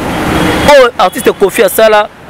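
A rush of road-traffic noise swelling for the first moment, then a man talking close to the microphone.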